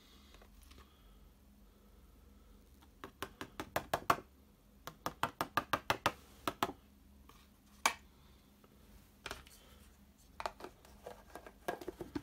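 Quick runs of sharp taps and clicks as a piece of cardstock is tapped and flicked over a plastic tub to knock loose embossing powder off the stamped image. A few more clicks near the end as the tub's plastic lid goes on.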